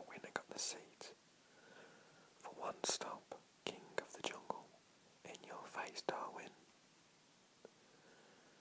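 A man whispering, reading aloud in short phrases with pauses between them, with a few sharp clicks among the words.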